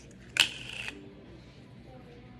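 A short, sharp sniff, about half a second of hissing breath in through the nose, taken at a small cup of cocktail sauce to smell it.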